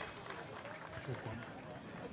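Faint murmur of people's voices, with no music playing.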